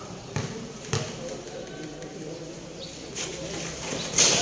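A basketball bounced twice on a concrete court, two sharp bounces about half a second apart near the start, over the background chatter of spectators.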